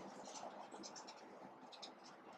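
Faint scratching of a marker pen's tip writing words, coming in short strokes.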